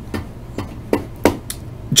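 About five light, sharp clicks and knocks spaced unevenly across two seconds, from hard plastic pieces being handled on a tabletop.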